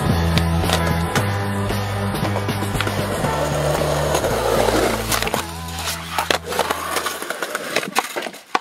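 Skateboard on rough concrete: wheels rolling and the board clacking and knocking. Backing music with a bass line plays underneath and ends about seven seconds in.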